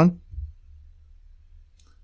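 Faint computer mouse clicks, one just after the start and one near the end, over a low steady room hum.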